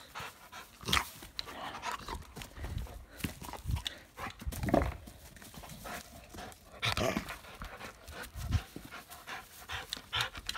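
A dog panting in irregular breaths while mouthing and tugging at a toy, with scattered knocks and rustles.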